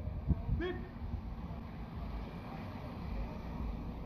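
Low, steady rumble of street traffic, cars and streetcars moving slowly past, heard through an open window, with a single sharp click shortly after the start.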